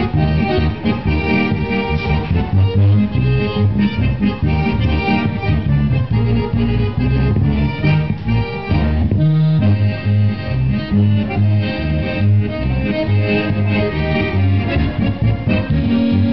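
Accordion playing a tune continuously: a melody in the right hand over a pulsing bass accompaniment that changes notes in a regular beat.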